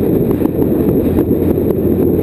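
Steady wind noise over a motorcycle-mounted camera's microphone at road speed, with the motorcycle's engine running steadily underneath.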